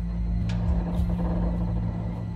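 A low, steady droning rumble from a tense film soundtrack, held without change.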